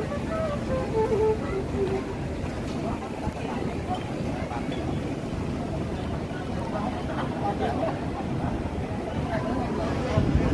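Steady low rumble of breeze buffeting the microphone, with faint voices talking in the background.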